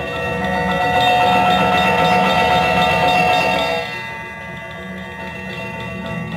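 Balinese gamelan ensemble of bronze keyed metallophones played with mallets, many ringing tones layered together. The music swells louder over the first few seconds, then drops suddenly to a softer passage about four seconds in.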